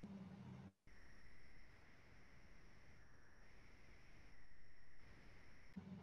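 Near silence: faint room tone with a thin steady hum.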